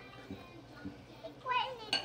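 A young girl's voice making a short wordless sound, with a few light taps of a metal fork in a glass bowl as she stirs beaten egg, and a sharper clink of fork on glass near the end.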